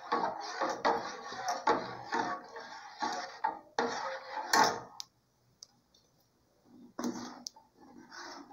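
A metal spoon stirring a thickening milk and cornstarch mixture in an aluminium saucepan, scraping the pot in repeated strokes roughly once a second. The stirring stops about five seconds in, and there is one more brief scrape near the end.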